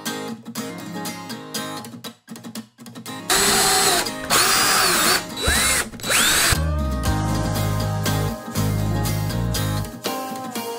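Cordless drill driving a screw through a metal hook's base into a wooden board. Its motor whine speeds up and slows in three short runs, starting about three seconds in. Acoustic guitar music plays before and after the drilling.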